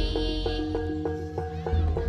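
Live jaranan gamelan music: drum strokes and struck metal keys ringing repeated notes over a deep bass that swells at the start and again near the end.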